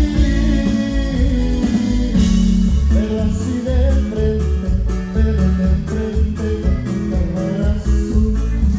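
Live norteño band playing loudly: electric bass and drum kit driving a steady beat under a twelve-string bajo sexto, with a voice singing.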